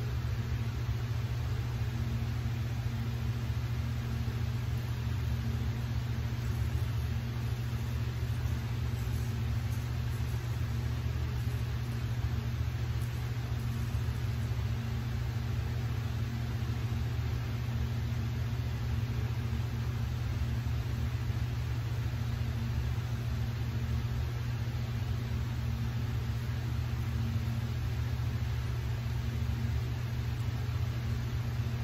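A steady low machine hum that holds at one even level throughout.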